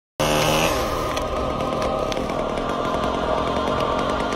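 Chainsaw cutting through a thick tree limb, running continuously with its pitch wandering up and down as it works through the wood.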